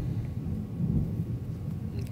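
A low, uneven rumble of background noise on the recording microphone, with no speech.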